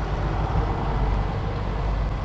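Tractor engine running steadily with a deep, even rumble.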